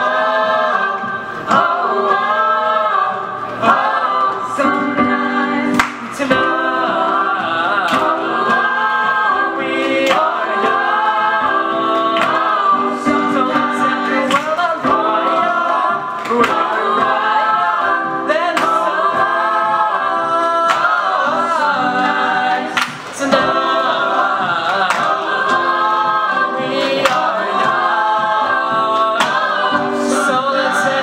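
A mixed-voice vocal ensemble of men and women singing a pop song together in harmony, with sustained lower notes under moving melody lines.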